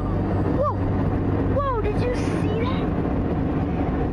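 A steady low engine drone under a constant rushing noise, with two brief vocal exclamations from a person about half a second and a second and a half in.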